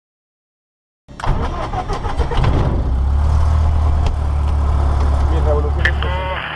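Propeller aircraft engine idling, a steady low drone heard from inside the cockpit, starting abruptly about a second in.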